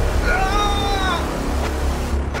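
Horror-film sound effect: a deep rumbling drone with a high, wailing shriek over it, the shriek falling slightly in pitch and lasting about a second.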